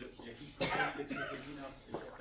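A person coughs sharply about half a second in, with quiet speech around it.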